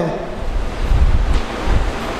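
Wind buffeting a microphone: a loud, uneven low rumble with a faint hiss, swelling about half a second to a second in.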